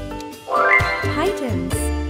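Upbeat ukulele background music. About half a second in, a short pitched sound effect sweeps sharply up in pitch and then slides back down over about a second, as the quiz countdown runs out.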